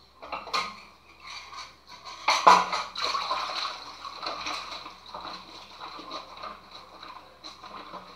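Dishes being washed by hand in a kitchen sink: a sponge scrubbing a ceramic mug, with dishes and utensils clinking irregularly and one louder clatter about two and a half seconds in.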